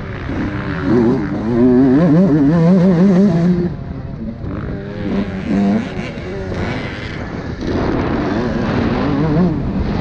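Motocross bike engine heard from the rider's helmet, revving up and down with the throttle. It pulls hard for the first few seconds, eases off about four seconds in, and opens up again near the end.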